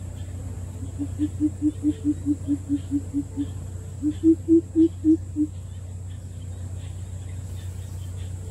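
Greater coucal giving its deep hooting call: a quick run of about a dozen even hoots, then after a short pause a second, louder and slightly higher run of about six, over a steady low hum.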